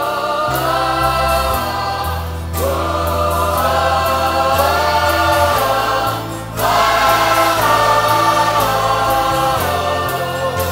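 Youth choir singing a gospel hymn in long held phrases over low, steady bass notes. The singing breaks off briefly about two and a half and six and a half seconds in.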